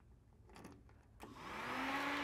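A faint click from the ignition key switch. About a second in, a small electric motor comes on as the key reaches the run position on the diesel engine panel: a whine rises in pitch over a hiss and levels off into a steady tone. The engine itself is not yet cranked, because the glow plugs are still heating.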